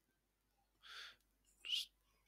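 Two short breaths close to a microphone: a faint one about a second in, then a louder, quicker intake just before speech resumes.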